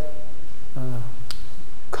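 A man's drawn-out hesitation 'äh', followed about a second and a half in by a single sharp click.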